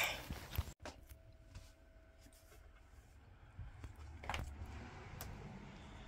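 Mostly quiet indoor room tone with a few faint knocks and clicks, one clearer knock about four seconds in. At the very start, a short burst of outdoor wind noise is cut off suddenly.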